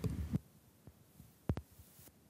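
Handling noise from a handheld microphone being passed from hand to hand: low rumbling bumps at first, then a single dull thump about one and a half seconds in.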